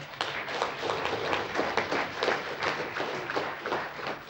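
A crowd applauding: a dense, irregular patter of many hands clapping.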